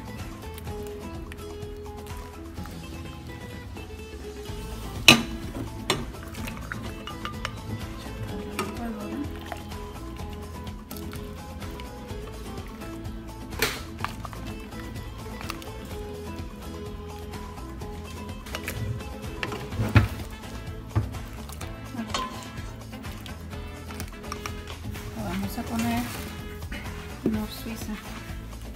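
Background music with a steady beat, over which a spoon knocks and clinks against a stainless-steel pot a few times as boiled tomatoes and chiles are scooped out; the sharpest knocks come about five seconds in and about twenty seconds in.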